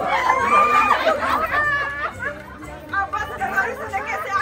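Several people chattering over one another, voices overlapping with no single clear speaker.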